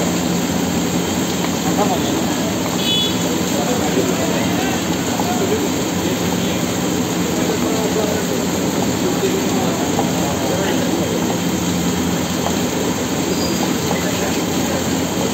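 Busy street-food stall ambience: a constant loud rumble and hiss with indistinct chatter of people nearby.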